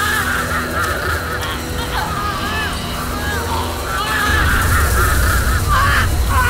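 Many voices screaming in overlapping high shrieks over a deep, steady drone in a horror film soundtrack.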